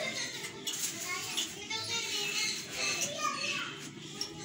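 Children's voices chattering and calling out in the background, in irregular short bursts.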